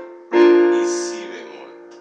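Electronic keyboard on a piano sound: a chord is struck about a third of a second in and left to ring, fading steadily. It is the closing B-flat chord of the progression, played right after an F7.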